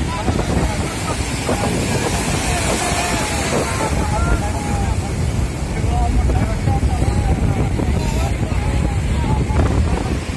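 Wind buffeting the microphone over breaking surf, with several people talking in the background.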